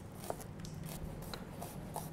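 Large kitchen knife slicing shallots on a plastic cutting board: a few light, separate taps of the blade against the board over a low steady hum.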